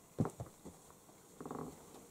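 A single sharp knock as things are moved on cluttered shelves, then quiet rummaging and a short low hum near the end.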